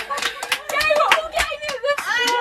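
Several young women clapping quickly and unevenly while laughing and shouting together in celebration.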